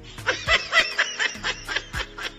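A person laughing in a quick run of short bursts, loudest in the first second, over background music with a steady beat.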